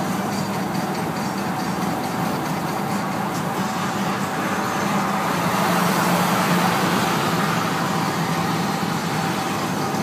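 Volkswagen Vanagon driving at highway speed: steady engine and road noise, growing a little louder for a couple of seconds midway.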